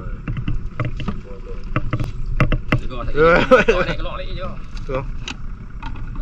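Crab lift net being handled aboard a small boat at night: a run of sharp knocks and clatter over a low steady rumble, with a voice calling out briefly about halfway through.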